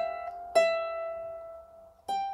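Lever harp playing the last note of a descending phrase: the E is plucked again about half a second in and left to ring, fading away over more than a second.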